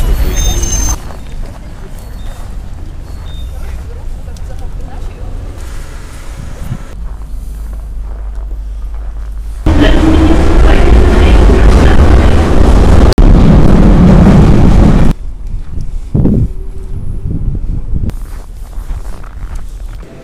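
Metro train running, heard from inside the carriage: a loud, even rumble and rush that starts suddenly about ten seconds in and cuts off about five seconds later. Before and after it are quieter street and station background sounds.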